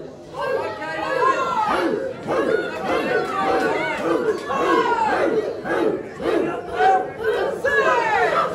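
Wrestling crowd yelling and shouting: many overlapping voices, many of them high-pitched children's voices, with no clear words.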